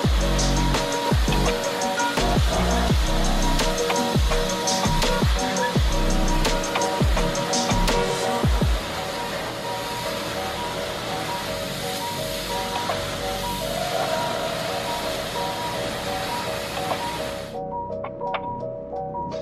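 Electronic music with falling bass hits that thin out about halfway through. Under it runs the steady hiss of a hot-water pressure washer's jet on slate roof tiles, which cuts off suddenly near the end.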